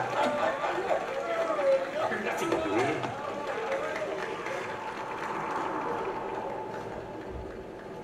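Soundtrack of an animated film clip played over a lecture hall's speakers: character voices in the first few seconds, then a busier, steadier background with a held tone from about three seconds in.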